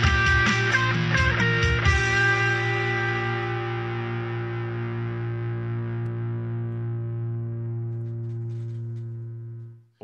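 Electric guitar: a few quick notes, then a closing chord left ringing and slowly fading away, dying out just before the end.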